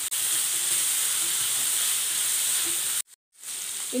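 Onions and chillies sizzling steadily in hot oil in a metal kadai as they are stirred with a wooden spatula. The sound cuts out briefly about three seconds in.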